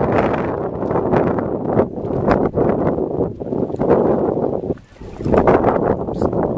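Wind buffeting the camera's microphone, a loud, uneven rumble with a brief lull about five seconds in.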